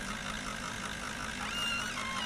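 Cartoon engine sound effect of a small three-wheeled truck driving slowly, a steady, evenly pulsing putter over a low hum.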